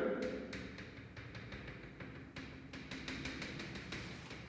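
Chalk on a blackboard: a run of light, irregular taps and short scrapes as lines and labels are drawn.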